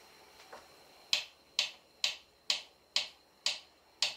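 Knife slicing through a peeled avocado half and striking the wooden cutting board with each cut: a regular run of sharp clicks, about two a second, starting about a second in.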